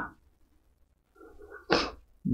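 After more than a second of near silence, a man gives one short, sharp vocal burst of breath near the end, loud and abrupt.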